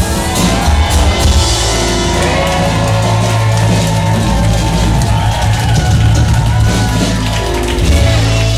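Live rock band playing a song on acoustic guitars, loud and steady, heard in the hall from among the audience.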